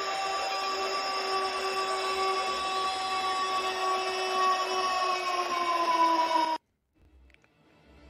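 Stadium goal-horn sound effect: a loud, sustained multi-tone horn blast that sags slightly in pitch and cuts off suddenly about six and a half seconds in.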